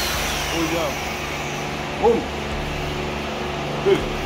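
Steady low mechanical hum, with a couple of short murmured vocal sounds over it.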